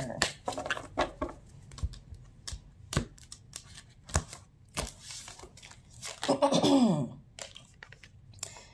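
A deck of tarot cards being shuffled and cut by hand: a scattered run of short, sharp flicks and clicks of card stock, with cards set down on a wooden table about four seconds in. A brief wordless vocal sound comes about six seconds in.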